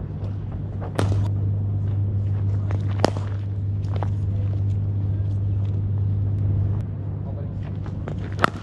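Cricket net practice: a few sharp knocks of bat on ball, the loudest about three seconds in, over a steady low hum that gets louder about a second in and drops back near the end.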